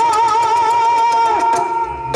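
Yakshagana bhagavata's singing voice holding one long high note over a steady drone. The note wavers at first, then steadies and fades out about a second and a half in.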